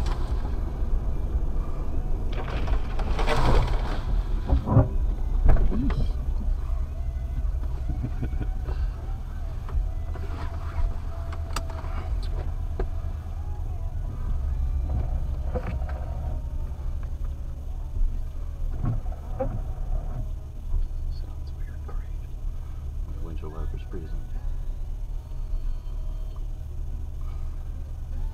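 Low steady rumble of a vehicle engine idling, heard from inside the cab, with scattered small knocks and clicks.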